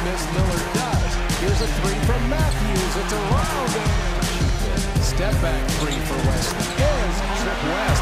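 A hip-hop instrumental beat over game sound from a basketball court. Sneakers squeak on the hardwood in many short chirps, and the ball bounces and slaps, with crowd noise underneath.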